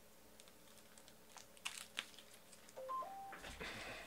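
Faint clicks and rustling of trading cards being handled. About three seconds in comes a short three-note electronic beep, low, high, then middle, followed by a louder burst of rustling.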